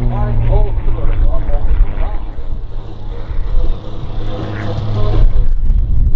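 Extra 330SC aerobatic plane's engine and propeller droning steadily overhead as it climbs vertically, with wind buffeting the microphone. The engine tone fades out about five seconds in as the plane draws away.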